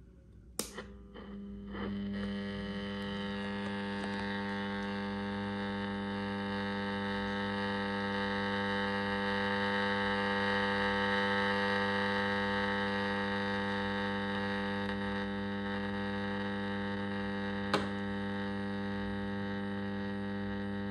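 Weston four-band Silicon transistor radio switched on with a few clicks, then a steady hum from its speaker made of many evenly spaced tones. The hum swells slightly in the middle, and there is one sharp click near the end.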